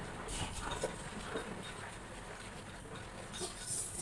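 People eating rice from bowls with chopsticks: chewing and slurping mouth sounds with light clicks of chopsticks against the bowls.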